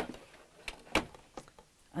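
Burlap fabric being handled and moved about by hand, with a few short, sharp clicks and rustles over a quiet background; the sewing machine is not running.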